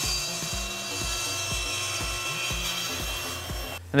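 Table saw ripping along a board's edge, the board clamped to a sliding sled to true an edge that is not straight: a steady hiss of the blade cutting through wood, cutting off suddenly near the end.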